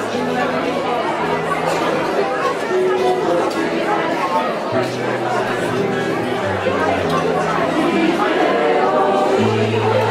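Choir singing with guitar accompaniment, with audience chatter throughout. Low held notes change pitch every second or two.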